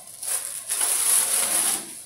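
Clear plastic wrap crinkling as it is pulled off and bunched up. There is a short spell just after the start, then a longer, louder one that stops near the end.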